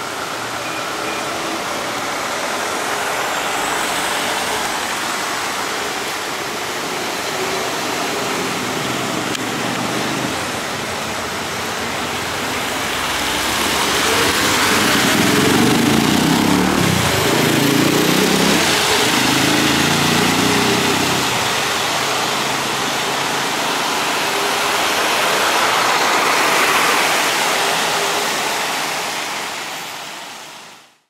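Street traffic noise as vehicles drive past, loudest in the middle when a motorcycle engine passes close by alongside a trolleybus. The sound fades out near the end.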